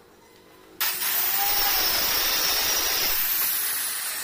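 A loud, steady rushing machine noise that starts suddenly about a second in and slowly eases off toward the end, with a faint high whine in it.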